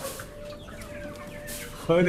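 Many caged chickens, white broilers and roosters, clucking softly together over a faint steady hum.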